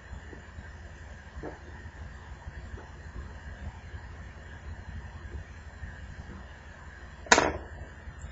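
Faint light clicks and scrapes of a small metal pry tool picking at the Droid Incredible's circuit board and ribbon-cable connector, over a low steady hum. A short sharp hiss comes near the end.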